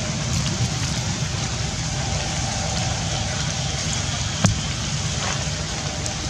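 Steady rain falling on leaves and ground, an even hiss with a low rumble underneath, and one sharp tap about four and a half seconds in.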